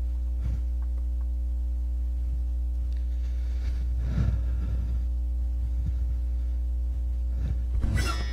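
Steady electrical mains hum from the outdoor sound system: a low buzz with a stack of even overtones, unchanging throughout, with only faint small rustles over it.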